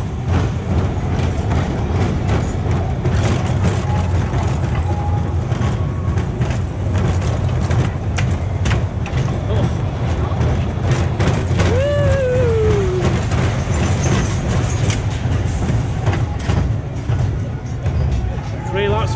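A Pinfari inverted family coaster train running along its steel track, heard from on board: a steady low rumble with constant clattering and rattling, and wind noise on the microphone. About twelve seconds in, a brief falling tone cuts through.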